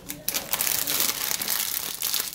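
Plastic candy bag crinkling as it is handled and set down on a table, starting about a third of a second in.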